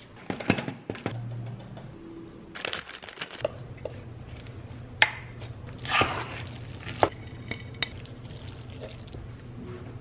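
Cooking clatter: a bowl and wooden spoon knocking and scraping against a pot as sauce is scraped into macaroni, with sharp knocks about five and seven seconds in. A steady low hum runs underneath from about three and a half seconds in.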